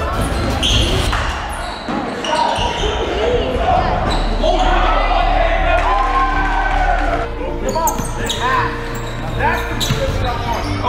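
Live basketball game sound in a gym: the ball bouncing on the hardwood floor with sharp knocks, and indistinct voices of players and spectators calling out, all echoing in the large hall.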